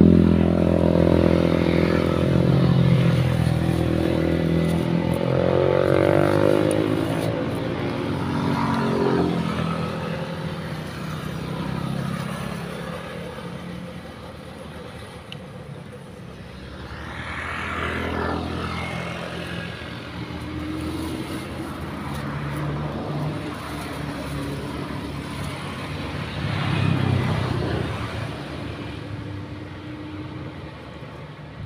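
Motor vehicles passing one after another on the road, engines swelling and fading as each goes by. The loudest pass is at the very start, with further passes about a third of the way in and near the end.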